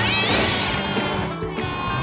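Cartoon cat's meow, one rising yowl in the first half second, over background music.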